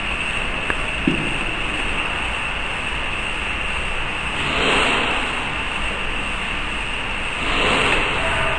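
Steady rushing background noise throughout, with a faint metallic click and a short low knock about a second in as steel punches are handled in a rotary tablet press turret.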